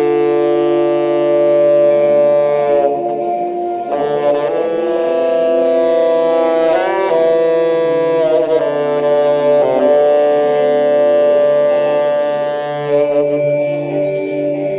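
Space rock music led by a saxophone playing long held notes that change pitch every couple of seconds, over a steady low drone.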